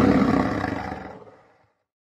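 Lion roar sound effect for a logo intro, dying away over the first second and a half.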